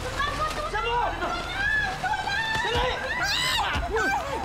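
Raised voices crying out during a scuffle over a bag, without clear words, with a shrill cry near the end.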